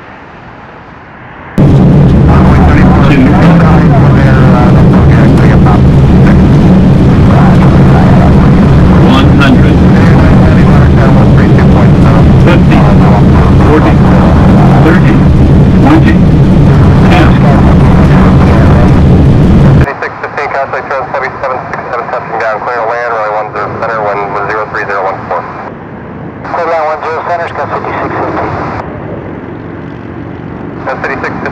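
Jet airliner engine roar at very close range, loud enough to overload the recording. It starts suddenly about a second and a half in and cuts off abruptly about twenty seconds in. Air traffic control radio voices follow it.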